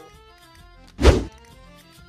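One short, heavy thunk about a second in, deep and loud, over faint background music.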